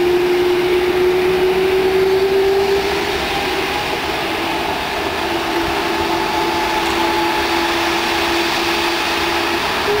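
Airbus A310's twin jet engines running as the airliner taxis onto the runway for takeoff: a steady whine over a broad rush. The whine rises slightly in the first few seconds, then holds level.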